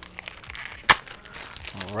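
Plastic crinkling and rustling as a CD jewel case is handled, with one sharp click about a second in.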